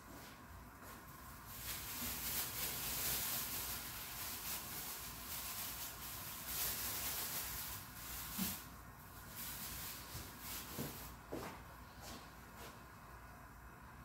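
Faint, uneven rustling of a plastic bag and hands as shredded chicken is taken out and loosened over a pizza base.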